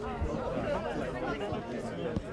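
Indistinct chatter of several voices at once, players and sideline spectators calling out during open play in a football match.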